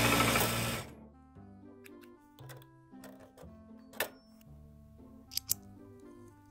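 Juki sewing machine motor running at speed and stopping under a second in. Soft background music follows, with a few light clicks.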